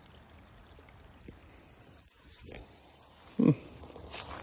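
Faint steady outdoor background, then one short, low grunt from a man's voice about three and a half seconds in.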